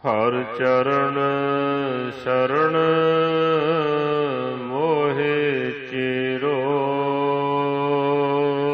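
Gurbani kirtan: a long, ornamented sung line that bends and glides in pitch over a steady drone, beginning suddenly.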